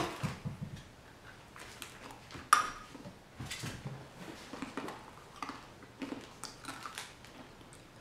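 Crunchy Japanese-style peanuts, with their crisp coating, being chewed: faint crunches and clicks, with one sharper crack about two and a half seconds in.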